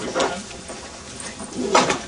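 Lecture-hall audience stirring with low room noise, broken by a short sound about a quarter second in and a louder short sharp sound near the end.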